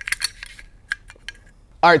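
A small cleaning brush scrubbing and clicking against the metal inside an AR-15 upper receiver. A quick run of short scratchy strokes comes in the first half second, then a few scattered light clicks.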